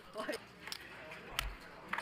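Faint poker-table sound: low background voices and a few sharp clicks of poker chips being handled, one with a soft low thump.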